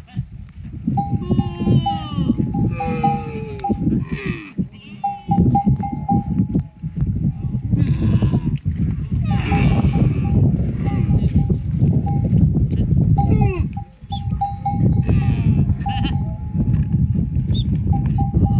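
A metal bell hung on a camel's neck clinks on one pitch in repeated clusters as the animal moves, among a herd of camels and goats. Several gliding animal calls come through near the start and about halfway through, over a steady low rumble.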